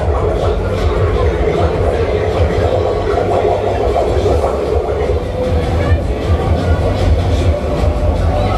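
Loud, steady din of a running Polyp octopus fairground ride, its machinery rumbling under the ride's music with heavy bass.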